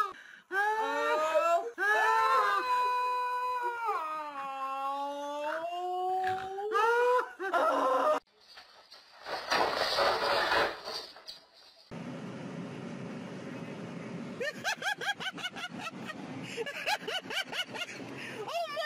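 A woman's long, wordless wail, sliding up and down in pitch for about eight seconds, as she peels a black peel-off face mask from her skin. Then comes a short burst of noise, and from about twelve seconds a steady hiss with a quick run of short pulsed voice sounds near the end.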